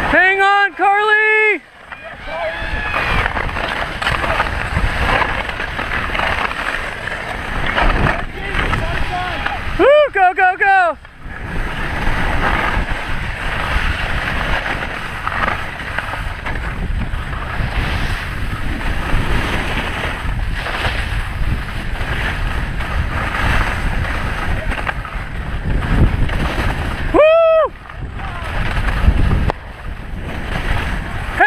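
Wind rushing over the helmet camera's microphone and skis hissing and scraping on snow at speed, a steady noisy rush. Three short high shouts cut through it: near the start, about ten seconds in, and near the end.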